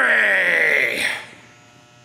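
A man's long, drawn-out yell that falls in pitch and breaks off after about a second, followed by a faint steady electrical hum.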